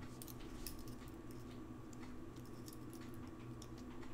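Galvanized steel wire being bent and handled by hand, giving faint scattered light clicks and ticks over a steady low hum.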